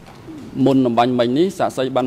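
A man's voice speaking after a brief pause, with one long drawn-out syllable.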